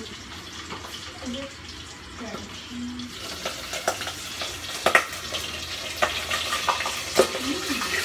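Steady bubbling hiss of a pot of water on a gas stove, growing louder and brighter about three seconds in, with a few sharp metal clinks from the pot and its lid.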